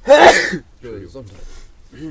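A man coughing once into his hand: a single loud, sudden burst lasting about half a second at the start.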